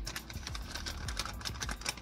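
Plastic bag of shredded cheese crinkling as it is handled, a quick run of small clicks and crackles.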